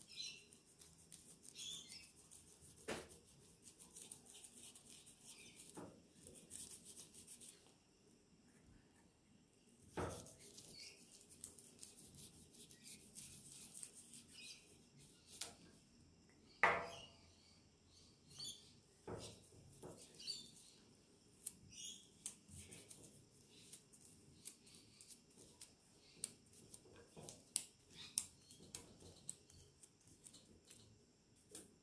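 Faint rubbing and scattered light clicks of a latex-gloved finger working chromium oxide paste into a leather strop, with a few louder taps, the strongest a little past halfway.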